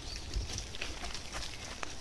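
A quiet pause with a faint low rumble and a few soft, scattered clicks.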